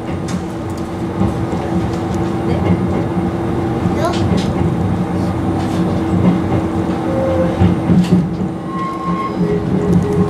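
Izukyu Resort 21 electric train running, heard from inside the driver's cab: a steady running rumble and motor hum, with occasional sharp clacks as the wheels pass over points and rail joints. Short squealing tones come from the wheels near the end.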